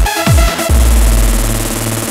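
Hands up electronic dance track: two kick-drum beats, then the kick drops out for a short break with a held deep bass note under a fast synth pattern.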